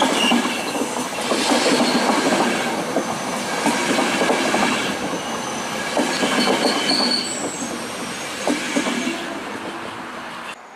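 Passenger coaches of a ČD EuroCity train rolling past and away, wheels clattering over rail joints with brief high-pitched wheel squeals, the sound fading as the last coach draws off.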